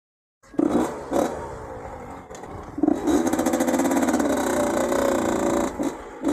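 Yamaha dirt bike engine running, with knocks about half a second and a second in, then revving up with a rising pitch about three seconds in as the bike pulls away.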